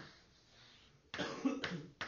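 A person coughing about halfway through: one harsh burst lasting under a second.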